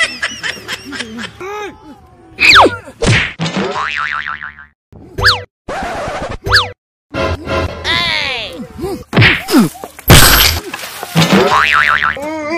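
Cartoon comedy sound effects laid over background music: a run of boings and quick rising and falling whistle glides. A loud hit about ten seconds in is the loudest event.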